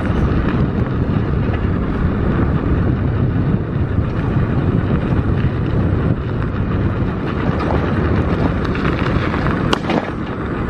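Wind buffeting the microphone of a fast-moving electric bicycle, mixed with its tyres rolling on rough asphalt: a steady, loud rush heavy in the low end. A brief high chirp is heard near the end.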